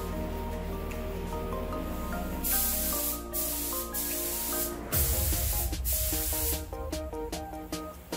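A paint spray gun hissing in two bursts while its spray pattern is test-sprayed: a short burst about two and a half seconds in, then a longer one of about a second and a half at around five seconds.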